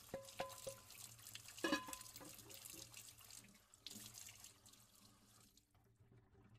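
Tap water running into a sink while dishes are washed, with two ringing clinks of crockery in the first two seconds and smaller knocks after them. The water stops shortly before the end.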